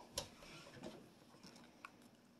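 Near silence with a few faint clicks and light taps: one sharper click just after the start and a small one near the end.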